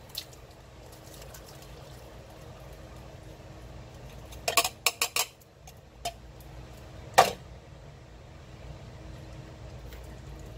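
A metal food can knocking against the rim of a ceramic slow-cooker crock as canned corn is shaken out of it: a quick run of four or five knocks about halfway through, a lighter one a second later, then one louder clink.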